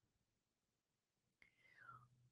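Near silence: a pause in a man's talk, with a faint mouth sound about a second and a half in.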